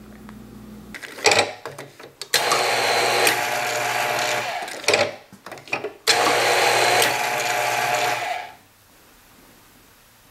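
Dispensamatic Bottle-Matic bottle labeler running two cycles of about two and a half seconds each, a steady motor whine, with short clicks and knocks as the bottle is handled before each run.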